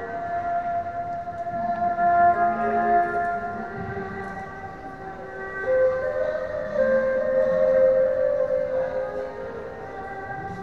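A street musician's slow, haunting melody of long held notes that slide between pitches, echoing under a stone-and-tile arcade.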